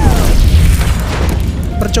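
A sudden loud explosion boom followed by a heavy low rumble that slowly eases: a hydrazine-burning water-making rig blowing up inside a Mars habitat, as a film sound effect.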